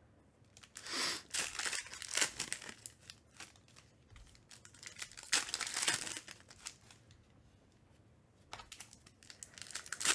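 Foil wrapper of a Panini Recon basketball card pack crinkling in the hands and being torn open. It comes in irregular bursts of crackling with short pauses, and the loudest stretch is around the middle.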